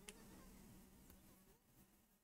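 Near silence: faint room tone with a steady low hum and one short soft click just after the start.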